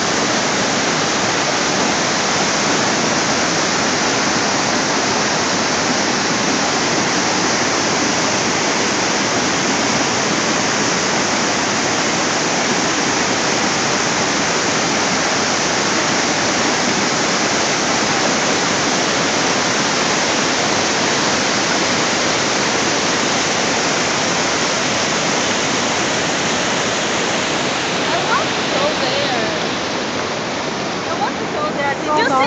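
Niagara Falls heard close up at the brink: a steady, even rush of falling water. A few brief louder bumps come near the end.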